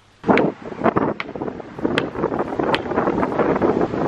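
Wind buffeting the camera microphone, starting abruptly just after the start, with three sharp knocks spread through it.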